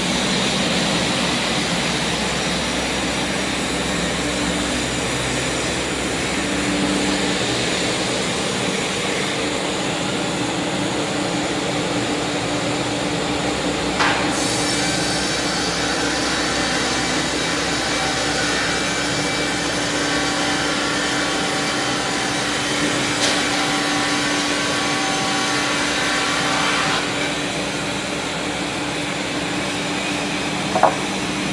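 Perun MDS-170 multi-rip circular saw machine, driven by two 45 kW electric motors, running steadily at speed with its gang of circular blades. After a sharp click about halfway through, a higher whine joins the steady hum for about thirteen seconds as timber is sawn through the blades, then drops away a few seconds before the end.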